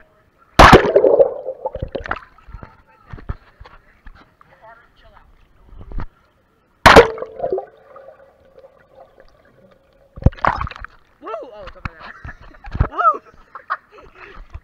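Pool water splashing and sloshing over a waterproof action camera as it plunges through the surface, with a loud splash about half a second in and another about seven seconds in, and a muffled sound under water between them. Voices call out in the last few seconds.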